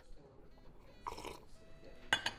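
A short slurp of coffee from a cup, about a second in.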